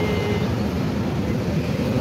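Road traffic with motorcycles passing on the street, a steady low rumble of engines and tyres.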